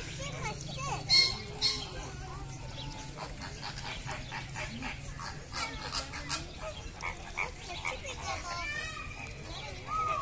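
Flock of flamingos calling, a steady mix of goose-like honks and gabbling chatter, with two loud honks just over a second in.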